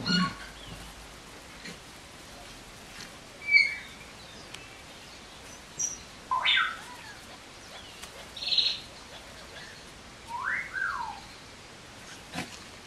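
Eight-week-old puppies giving short, high-pitched squeaks and yelps as they play-fight, a handful of brief cries a second or two apart, the last ones sliding up and then down in pitch.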